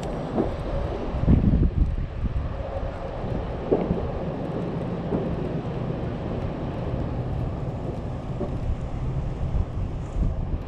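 Wind buffeting the microphone, a steady low rumble with a stronger gust about a second in.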